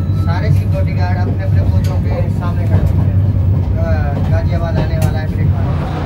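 Steady low rumble of the Tejas Express running, heard inside the passenger coach, with voices talking over it.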